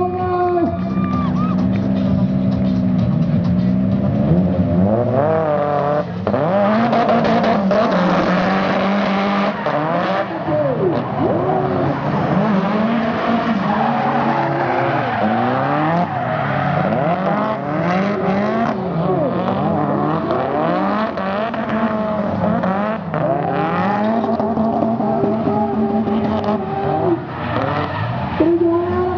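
Drift cars running together, their engines revving hard and falling back over and over as they slide, with tyres squealing through much of the run.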